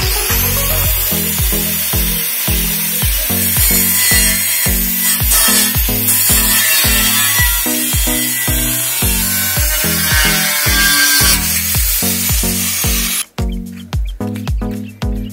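Electric angle grinder cutting into the metal top of a beer keg: a loud, harsh grinding that runs steadily and stops abruptly about a second before the end. Background music with a steady beat plays underneath.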